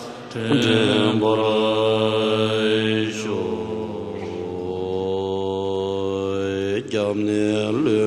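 A large group of Tibetan Buddhist monks chanting a prayer in unison. The chant is slow and drawn out, with long held notes that slide in pitch between phrases.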